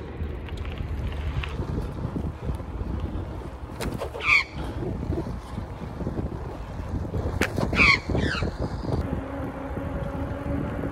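Australian magpie giving two short bursts of harsh calls, one about four seconds in and another near eight seconds. Under them runs the steady low rumble of wind and road noise from riding.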